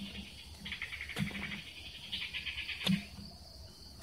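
A long-handled hand tool chopping into the ground in dull thuds, twice, about a second and a half apart. Insects trill through the middle of it.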